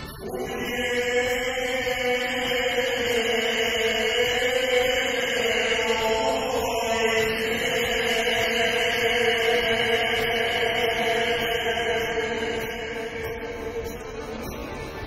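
Sevdalinka sung live: a male voice holds a long, slightly wavering note, shifting pitch once about halfway, over a small string orchestra, then eases off near the end.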